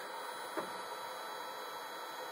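MakerBot Replicator 5th generation 3D printer running with a low, steady whir at the start of a print, with its smart extruder parked at the edge of the build plate.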